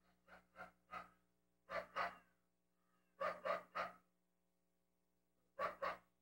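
A dog barking in short, sharp barks, in quick runs of three, two, three and two with pauses between; the first run is quieter than the rest.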